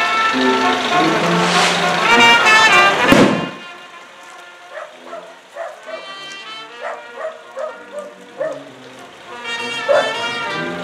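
Brass band music, loud at first, dropping suddenly to a quieter passage of short repeated notes about three and a half seconds in, and growing louder again near the end.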